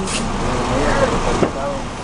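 Quiet, mumbled talking over a steady outdoor background noise.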